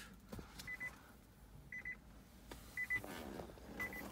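A car's electronic warning chime inside the Nissan Leaf's cabin: a quick cluster of short beeps repeating about once a second, with faint handling noise between them.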